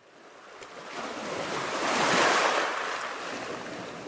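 Sea surf sound effect: a single wave rushing in, swelling for about two seconds and then washing away.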